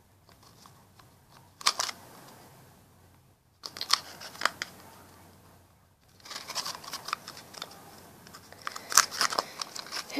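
Intermittent crinkling and crunching of a thin plastic bottle and clay being handled and pressed. It comes in short scattered bursts: once about two seconds in, again around four seconds, then more steadily from about six seconds on.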